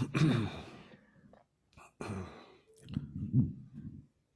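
A woman's breathy laugh trailing off into a sigh, then a soft exhale and a few low, murmured voice sounds.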